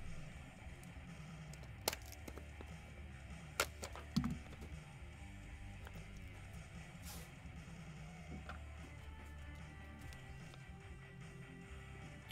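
Quiet background music playing under a few sharp clicks and taps, about two, three and a half and four seconds in, from a cardboard trading-card box being handled and opened.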